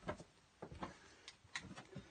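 Faint, scattered light taps and clicks, about eight in two seconds: handling noise as the phone is moved around a wooden cot.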